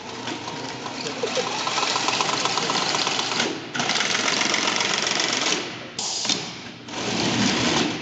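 Electric drive motors and gearboxes of a robot's octocanum drivetrain whirring as it drives across carpet. The noise comes in spurts that stop briefly a couple of times and then start again as the robot moves off.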